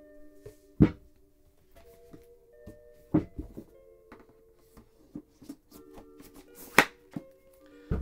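Hardback books and a large art book being handled and pushed back into a cardboard box set: sharp knocks about a second in, a cluster around three seconds in, and the loudest near the end. Soft background music with held notes plays underneath.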